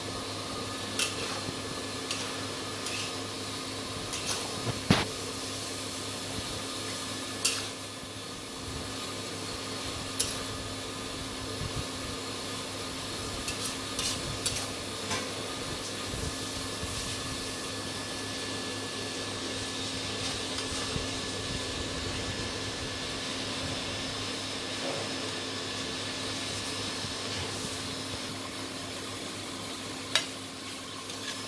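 Metal spatula scraping and clinking against a wok as a stir-fry of eggplant and shrimp is lifted out onto a plate, a sharp clink now and then, the loudest about five seconds in, over a steady hiss and hum.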